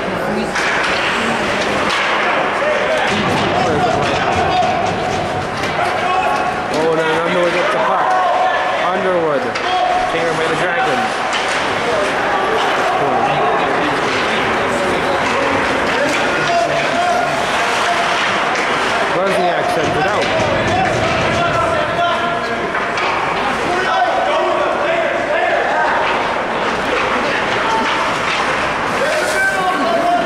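Many indistinct voices talking and calling out over one another in a hockey rink, with occasional sharp knocks from sticks and puck on the ice and boards.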